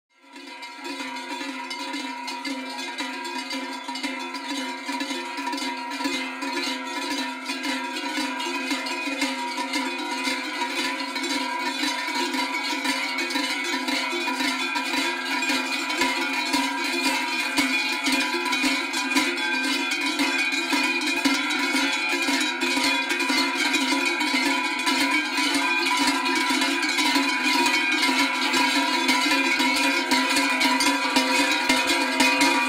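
Many large cowbells rung together by a group, a dense, unbroken clanging of overlapping bell tones that fades in at the start and grows slowly louder.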